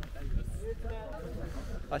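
Faint talking in the background over a steady low rumble.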